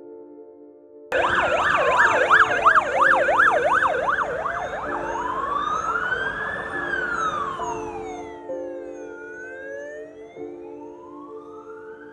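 Ambulance siren starting suddenly about a second in: a fast yelp of about three sweeps a second, which switches to a slow wail rising and falling in pitch. A soft music bed runs underneath.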